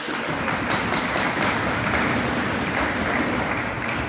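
Audience applauding loudly, many hands clapping together in a dense, steady stream.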